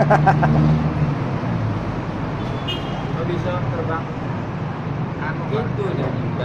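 Men's voices talking in a small group, loudest in the first second and again near the end, over a steady low background rumble.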